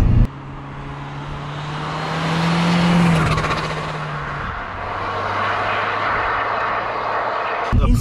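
Seat Ibiza 6J's 1.6 TDI diesel engine driving past on the road, its centre silencer removed and a semi-straight rear box fitted. The note rises and grows louder to a peak about three seconds in, then drops to a lower note and fades as the car draws away over tyre noise.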